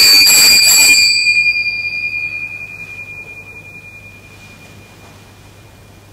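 Altar bells rung at the consecration of the host: a loud, bright metallic ring, shaken for about the first second, then dying away over the next three seconds.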